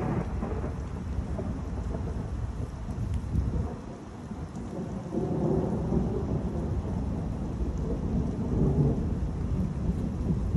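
Thunder rumbling from a thunderstorm. It eases briefly just before halfway, then rolls in louder again for the second half.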